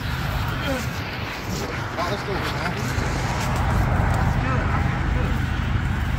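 A steady low engine hum, like a motor vehicle idling, with a few faint, brief voices over it.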